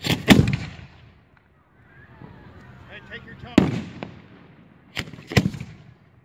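Fireworks cake firing shots overhead: two sharp reports right at the start, another about three and a half seconds in, and two more close together near the end, each trailing off in a short echo.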